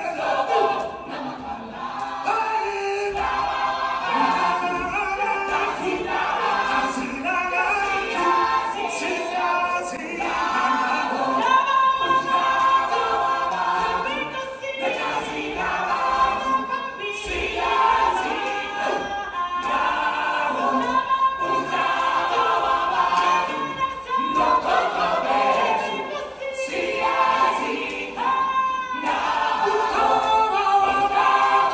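Ensemble choir singing in a live stage musical, many voices held in sustained, wavering lines, heard from the audience through a phone microphone.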